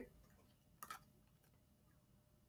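Near silence: room tone, with two quick faint clicks just under a second in from cards being handled.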